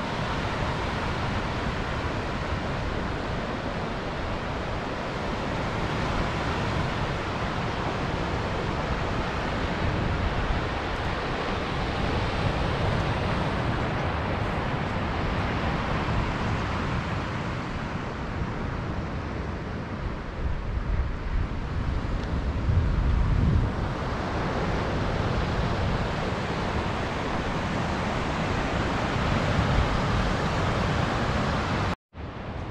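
Steady wash of small Lake Michigan waves breaking on the beach below, mixed with wind on the microphone that gusts louder about three-quarters of the way through.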